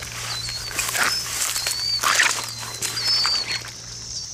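Footsteps swishing through grass and weeds at a pond's edge, with a few louder rustles about one and two seconds in. Birds chirp over a steady high buzz of cicadas.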